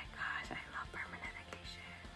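Faint background pop music with quiet vocals, heard in a pause between words.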